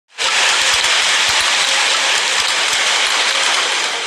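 Hailstones falling hard onto paving and lawn: a loud, dense, steady clatter, with scattered low thuds of heavier strikes.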